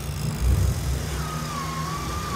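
Steady industrial background noise: a low machinery rumble under a constant hiss, with a thin whistle-like tone wavering briefly past the middle.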